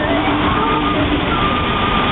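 Music from the Bellagio fountain show's loudspeakers, with long held notes, over a steady rushing of the fountain's water jets as a row of jets climbs into a tall line of spray.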